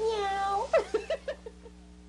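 A high-pitched cackling laugh: one drawn-out note, then about six quick bursts that fade away.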